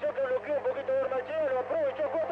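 Speech only: a fast-talking race commentator on a radio broadcast, with a steady low hum underneath.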